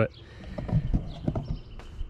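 A run of soft, irregular thumps and rustling from the handheld camera being handled and turned around.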